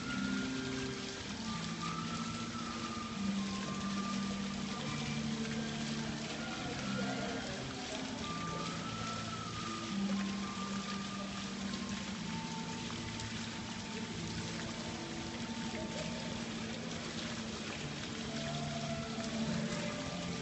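Small fountain jets splashing into a tiled pool, a steady patter of water, with soft background music of long held notes.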